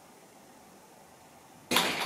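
Faint room hiss, then about one and a half seconds in a sudden loud rushing noise.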